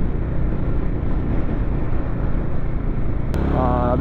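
Bajaj Dominar 400's single-cylinder engine running at a steady cruising speed, under a constant rush of wind and road noise on the bike-mounted microphone. Near the end the sound changes abruptly and a voice begins.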